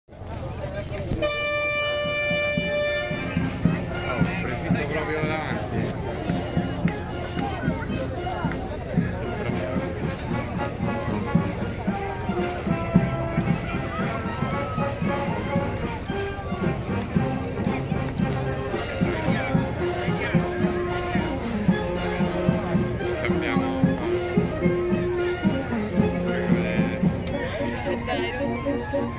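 A crowd talking, with a band playing sustained brass-like notes. A horn blast lasts about two seconds near the start.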